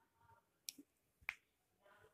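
Near silence broken by two faint, short clicks about half a second apart.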